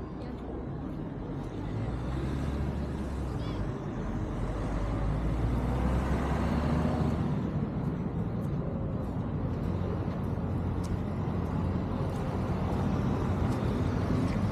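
Road traffic running beside the promenade, a steady low rumble with one vehicle passing that swells and fades about halfway through.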